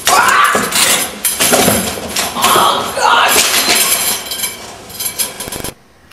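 A manual wheelchair tumbling down a flight of concrete steps: a long run of clattering, banging metal-frame crashes that ends abruptly near the end.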